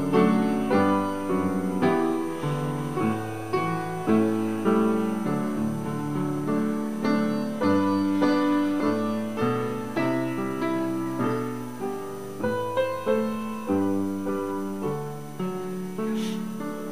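Piano music: chords and melody notes struck one after another, each dying away after its attack.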